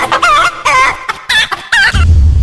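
A run of four short, loud, pitched animal-like calls, each bending up and down in pitch, about two a second, cut off sharply at the end.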